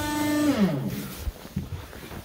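A single held organ pipe note that slides down in pitch and dies away about half a second in.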